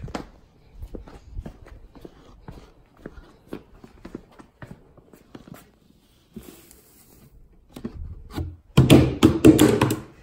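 Sawdust thrown onto a concrete floor and scuffed around under a boot: scattered light taps and scrapes, then a louder rough scraping burst about a second long near the end.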